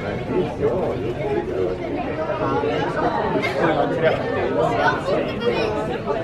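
Many people talking at once: the steady babble of waiting passengers in an airport terminal gate area.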